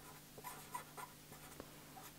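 Marker pen writing on paper: a few faint, short scratching strokes.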